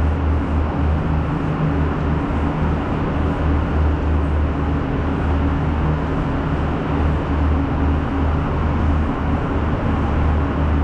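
Steady low drone of the Enterprise train's diesel engine idling at the platform, over a constant hiss of station noise.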